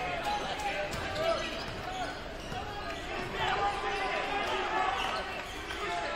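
A basketball being dribbled and players' sneakers squeaking on the hardwood court, over the chatter of a gym crowd. The squeaks come as many short, separate chirps.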